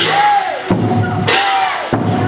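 Klong sabat chai (Lanna victory drum) being beaten with padded mallets in a drum performance, with two loud crashing strikes, one at the start and one about a second and a half in, and a ringing tone sustained underneath.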